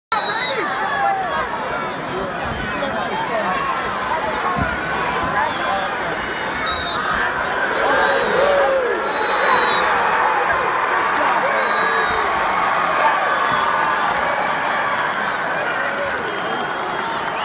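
Arena crowd at a wrestling match, many overlapping voices shouting and cheering. The noise swells from about halfway in as the overtime takedown happens.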